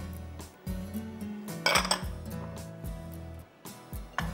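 A small glass bowl clinking and scraping against a glass mixing bowl as chopped spring onions are tipped in, with a short scrape a little under two seconds in, over soft background music.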